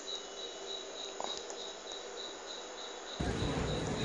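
A cricket chirping steadily: a faint, high-pitched pulse repeating several times a second over low hiss. Near the end it gives way suddenly to louder, low-pitched outdoor rumble.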